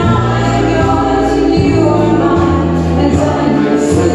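Live band playing a song, with several voices singing together over sustained bass notes and guitar, and a steady beat of light high strokes about twice a second.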